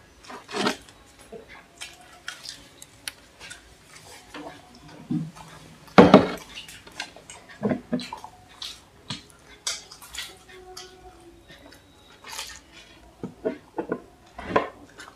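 Irregular clicks and knocks of tableware while people eat samosas and drink chai: clay kulhad cups and plates being handled and set down. The loudest knock comes about six seconds in.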